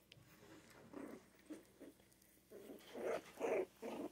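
Litter of 3½-week-old Scottish terrier puppies vocalising in a series of short calls, louder and closer together in the second half.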